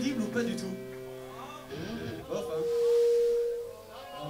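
Amplified electric guitar: a chord rings on and dies away, then a single clean note is held for about a second and a half, swelling and fading.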